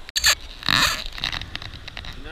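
Water and black sand swishing and scraping around a plastic gold pan as it is panned down: a short gritty burst just after the start and a louder one about three quarters of a second in.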